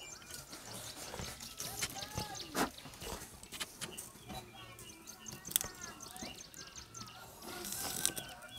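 Faint clucking of chickens with small birds chirping, over scattered soft clicks.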